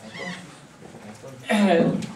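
Classroom room tone with a faint, brief, high, squeak-like sound just after the start, then a man's voice begins speaking about three-quarters of the way in.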